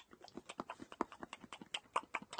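A quick, irregular run of faint clicks and taps, about eight to ten a second, like light handling noise.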